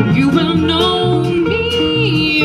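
A live acoustic string band playing: strummed acoustic guitars and upright bass under a sustained melody line with held notes.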